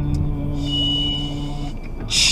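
A man humming one steady low note, which stops shortly before the end, over the low rumble of the car.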